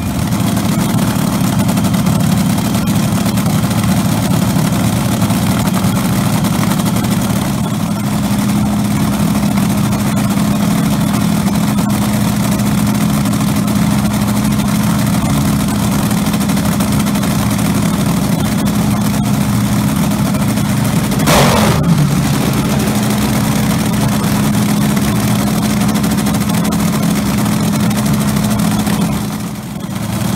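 Supercharged V8 of a front-engine dragster, up on wheel stands for a warm-up, idling steadily and loudly. About two-thirds of the way through it gives one quick blip of the throttle.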